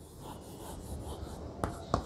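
Chalk writing on a blackboard: faint scratching strokes, with two sharp clicks of the chalk near the end.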